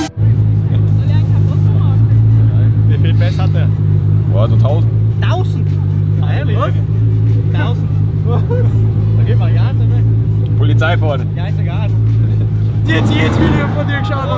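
Volkswagen Golf Mk3's engine idling, heard from inside the cabin as a loud, steady low drone. Faint voices of people around the car come through over it.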